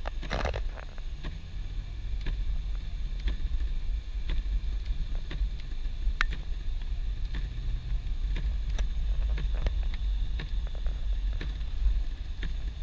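Car driving on a snow-covered road, heard from inside the cabin: a steady low rumble with scattered sharp ticks and crackles throughout.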